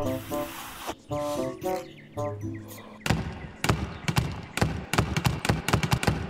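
A few short pitched notes, then from about halfway a rapid run of a dozen or so loud bangs: doors slamming shut one after another.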